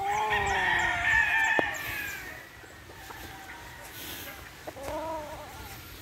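A gamefowl rooster crowing: one long, loud crow that falls slightly in pitch over about two seconds. A shorter, fainter rooster call follows about five seconds in.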